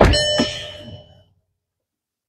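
A single chime strikes and rings out, its tones fading away over about a second, with a light knock under it about half a second in.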